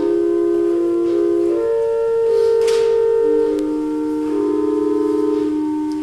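Organ playing a slow prelude: held chords whose notes change in steps and sustain without fading.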